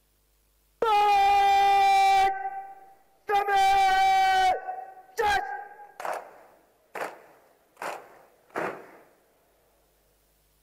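Brass bugle call at a military parade: two long held notes and a short third one, followed by four shorter, fading sounds about a second apart.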